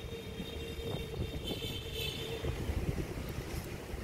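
Faint outdoor background noise: a low, uneven rumble, with a faint steady hum during the first two to three seconds.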